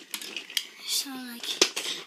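Plastic Lego bricks clicking and clattering together in a few sharp knocks, the loudest a little past the middle.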